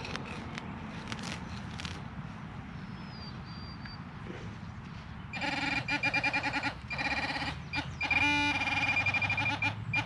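Faint scrapes of a digging knife in turf, then, about five seconds in, a Garrett pinpointer starts buzzing in rapid pulses. The pulses briefly run together into a continuous buzz and then pulse again, as the probe signals a metal target in the dug hole.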